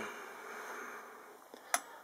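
Faint handling rustle, then a single sharp metallic click near the end as a brass ball valve is picked up by hand.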